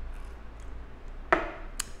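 A paper cup set down on a wooden table: one sharp knock about two-thirds of the way in, followed by a short click near the end.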